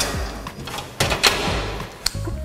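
Clatter and knocks of kitchen things being handled and set down at a counter, with a sharp knock at the start and another about a second in.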